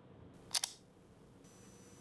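An iPhone's unlock click: one short, sharp double click about half a second in, heard over faint room tone.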